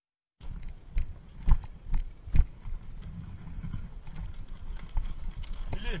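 Bicycle ridden along a railway track, starting about half a second in: a steady rumble with a few loud knocks in the first couple of seconds as the bike jolts over the sleepers and ballast.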